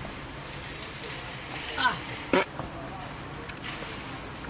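A passenger climbing out of a parked car through the open door, over a steady low hum. A brief spoken fragment comes a little under two seconds in, and a single sharp clunk follows just after.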